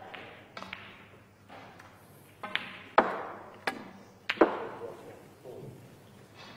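Snooker balls clicking: the cue tip striking the cue ball, then ball knocking on ball and off the cushions. There are several sharp clicks, with the loudest about three seconds in and again near four and a half seconds, each followed by a short fading echo.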